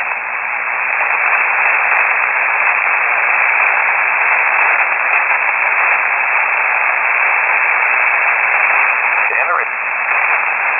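Steady hiss of HF static from a shortwave receiver in upper sideband, heard on an open aviation radio channel with no one transmitting. A brief fragment of a faint voice comes through near the end.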